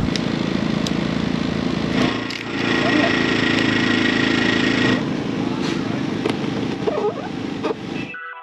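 Steady mechanical drone of small engines running, with people talking in the background and a few light clicks.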